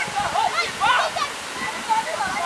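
High-pitched voices of several women and children calling out over the steady rush of surf breaking on the beach.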